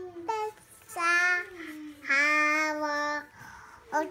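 A voice singing a wordless tune in long held notes: a short note, then two longer ones, the last held steady for about a second.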